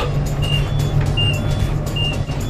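A short, high electronic beep repeating about every three-quarters of a second over a steady low hum, heard inside an elevator cab.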